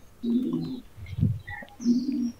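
A bird cooing: two short low calls about a second and a half apart.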